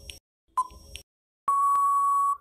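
Quiz countdown-timer sound effect: a tick with a short ping about once a second, then one long, steady beep near the end that signals time is up.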